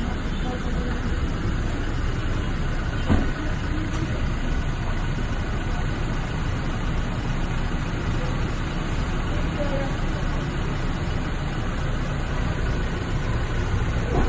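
SUV engine idling steadily, with a single knock about three seconds in.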